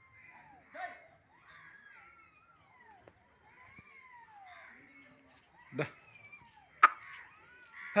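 Birds calling over and over with short calls that slide downward in pitch, and two sharp knocks near the end, the second much the louder.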